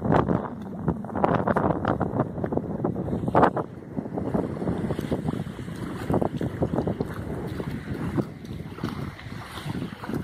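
Strong wind buffeting the microphone in uneven gusts.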